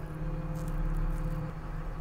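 Cat RM400 reclaimer/stabilizer's diesel engine running steadily at low idle, heard from inside the cab. A faint steady whine joins it for about a second and a half as the machine engages the rotor.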